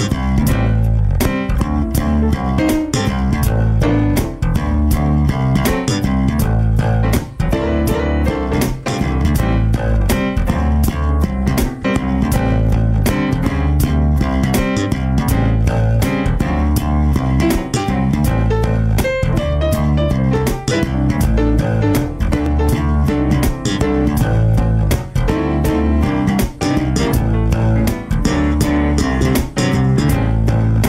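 Instrumental jam of electric bass guitar and digital stage piano played live together, a steady groove with a strong bass line under keyboard chords.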